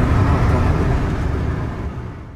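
Car cabin noise while driving: a steady low engine and road rumble with tyre hiss, fading out near the end.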